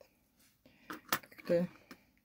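A few light metallic clicks as an old metal filigree brooch is set down among other brooches on the table, the sharpest just past a second in. A short vocal sound comes in between them.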